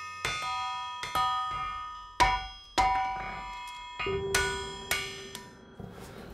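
Blacksmith's hand hammer striking hot horseshoe iron on an anvil, about eight blows at an uneven pace. Each blow rings out with a clear metallic tone that fades before the next. A steady low hum sits under the last two seconds.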